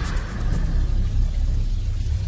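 A steady, deep rumble that starts suddenly as the speech stops, laid on the film's soundtrack.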